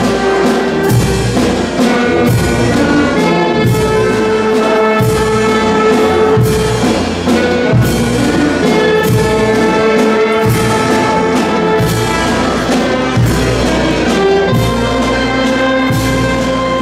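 A brass band playing dance music, with held trumpet and trombone notes over a steady percussion beat.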